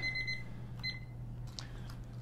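Digital interval timer beeping its high alarm tone to mark the end of the timed hold: one beep at the start and a short one about a second in, then it stops.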